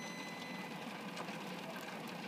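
Weber Summit gas grill's rotisserie running: the electric spit motor turns two chickens with a steady whir and a faint high whine, over the even hiss of the lit burners.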